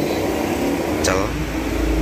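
A man's voice speaks one short word about a second in, over a steady low background hum, with a low rumble swelling near the end.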